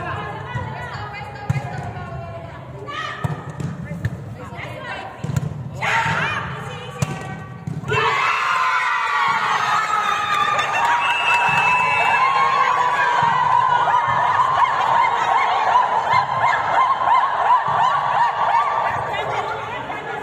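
Volleyball thuds and scattered voices, then from about eight seconds in many women's voices shouting and cheering together, echoing in a large sports hall, as the match ends.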